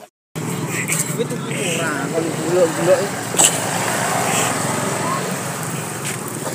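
Busy street ambience: motorbike engines running steadily, with crowd chatter and voices over them.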